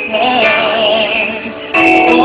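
Live pop ballad music from a band: sustained chords under a held melody note that wavers in pitch, with a new chord coming in near the end.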